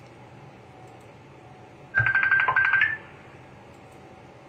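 Phone ringtone or call tone sounding for about a second, starting about two seconds in: a rapidly pulsing beep that steps up in pitch just before it stops.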